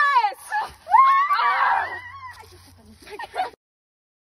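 Girls squealing with excitement: a very high-pitched cry that falls away at the start, then a longer squeal mixed with laughter about a second in. The sound cuts off abruptly about three and a half seconds in.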